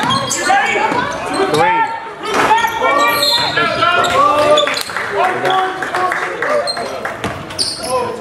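Basketball game on a hardwood gym court: the ball dribbling, sneakers squeaking and players' voices, with no break in the sound.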